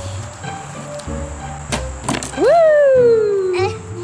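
Background music, over which a plastic toy bat clacks against a plastic T-ball a little under two seconds in. It is followed by a loud whoop that sweeps up in pitch and then slides down for about a second.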